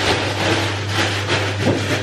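Crinkling and rustling of plastic food packaging being handled, with a steady low electrical hum underneath.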